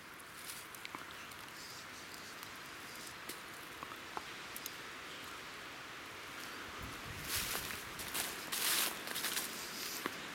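Footsteps crunching and rustling through dry leaf litter and low shrubs, starting about six and a half seconds in and growing louder. Before that there are only a few faint ticks and rustles.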